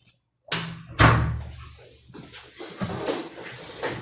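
A door pushed shut: a sharp knock about half a second in, then a louder slam half a second later, followed by softer shuffling and a dull thud.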